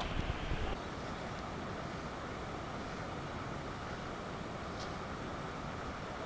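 Steady low outdoor noise of wind buffeting the microphone, a little louder and choppier in the first second.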